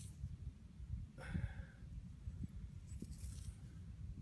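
Low, steady rumble of wind on the microphone with faint handling noise as a muddy coin is turned in the fingers, and one short faint sound about a second in.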